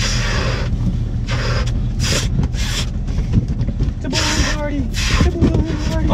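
Latex balloons being blown up by mouth: about six short puffs of breath rushing into the balloons, a second or so apart, over a steady low rumble.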